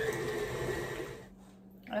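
KitchenAid tilt-head stand mixer running, its beater working softened butter and peanut butter in a steel bowl, then stopping a little past halfway.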